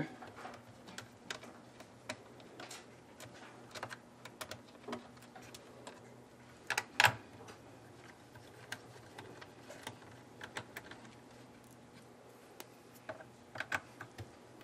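Scattered light clicks and ticks of a small screwdriver turning out screws from a plastic laptop chassis, with hands handling the parts. The sharpest pair of clicks comes about seven seconds in.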